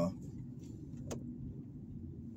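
Car cabin noise while driving: a low, steady rumble of engine and tyres, with one faint click about a second in.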